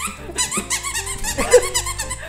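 Repeated short, high squeaks from plush octopus dog toys being shaken and grabbed at.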